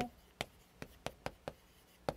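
Chalk writing on a chalkboard: about five sharp taps, with light scraping, as the chalk strikes the board stroke by stroke.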